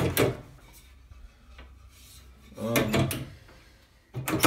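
Wood-framed mirrored sliding closet door being worked on its track: a sharp knock right at the start, then a longer rolling, rumbling slide about two and a half seconds in.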